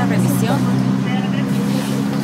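A steady low engine hum, like a vehicle idling close by, under brief snatches of talk.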